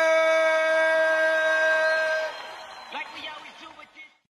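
Ring announcer's voice holding one long drawn-out shout, the stretched last syllable of the winner's name, for about two seconds. It then trails off into fainter, shorter voice fragments, and the sound fades out near the end.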